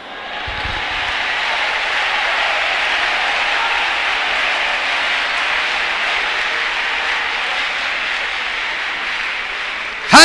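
Large congregation applauding, a steady dense clapping that builds up over the first second and holds.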